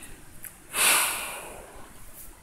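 A single short breath, about a second in, close to the microphone; it fades out within about half a second.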